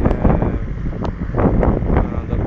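Loud, gusty wind buffeting the microphone as a rumble.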